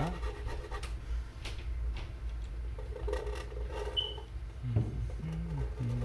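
Fine-tip drawing pens scratching and tapping on paper during sketching strokes, over a steady low hum. A low voice sounds briefly near the end.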